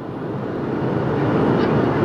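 Steady roar of jet engines and airflow inside the cabin of a Southwest Airlines Boeing 737 on its approach to landing, growing a little louder.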